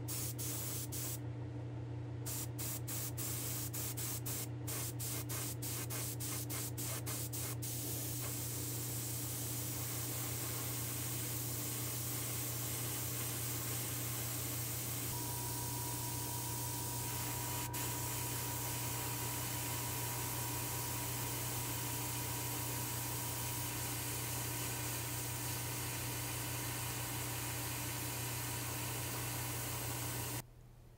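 Airbrush spraying red Createx paint onto a small diecast van body: a steady, continuous hiss of atomising air and paint, over a steady low hum.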